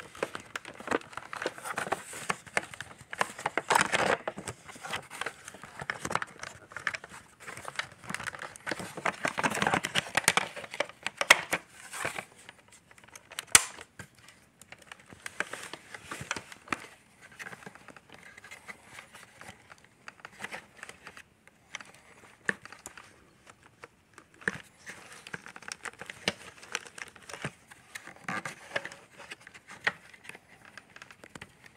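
Hands handling the plastic floor head of a Shark Apex vacuum with its motor off: irregular rustling, scraping and clicking of plastic parts, with two sharp clicks about halfway through.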